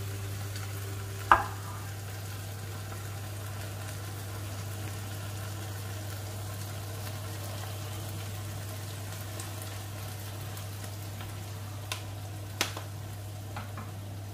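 A tofu and seafood stir-fry sizzling gently in a frying pan over a gas flame, nearly cooked with its liquid mostly gone. Under it runs a steady low hum, with one sharp knock about a second in and two small clicks near the end.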